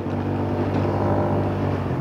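Kymco Urban 125 scooter's 125 cc forced-air-cooled engine running under way, a steady engine note that grows a little louder over the first half second and then holds.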